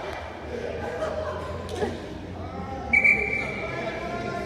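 Distant voices of players and spectators echoing in a large indoor sports hall, with a single steady, high-pitched referee's whistle blast starting about three seconds in and lasting about a second.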